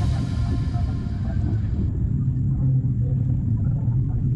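Wind buffeting the microphone: a steady low rumble. Background music fades out over it within the first two seconds.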